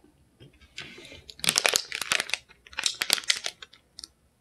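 Thin plastic snack wrapper crinkling as it is picked up and handled, in two spells of crackling: about a second and a half in, and again around three seconds.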